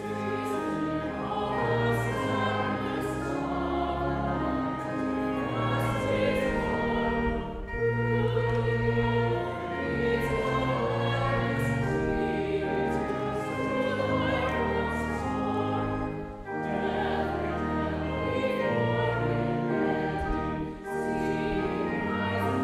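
Congregation singing a hymn together, carried by sustained organ chords with a deep held bass, with brief pauses between phrases.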